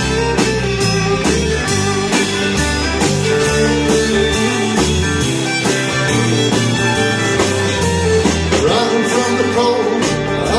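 Live band playing, electric guitar over bass and drums, with a steady beat of about two drum strokes a second.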